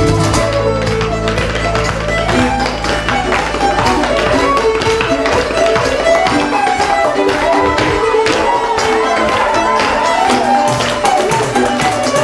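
Live folk band playing: fiddles and accordion carry gliding melody lines over acoustic guitar, and a cajon beats a steady run of sharp taps.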